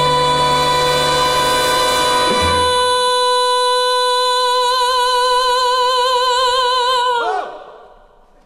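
A woman's voice holding one long high note, steady at first and then with a widening vibrato. The accompaniment's held chord underneath cuts off about two and a half seconds in, leaving the voice alone until it ends with a short downward slide near the end.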